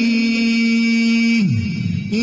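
A male reciter's voice holds one long, steady note in melodic Quran recitation, then slides down in pitch and breaks off near the end.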